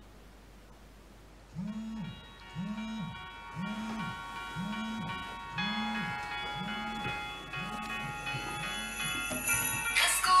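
Smartphone alarm going off: a chiming ringtone starts about a second and a half in, over a low buzz that pulses about once a second as the phone vibrates.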